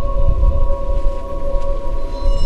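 Background music: a dark, droning pad of steady held tones over a low rumble.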